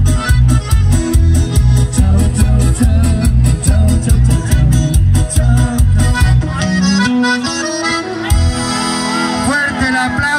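A live band with an accordion lead plays over a steady pulsing beat of bass and drums. About six and a half seconds in the beat drops away and the melody carries on alone. Near the end, sweeping gliding tones come in.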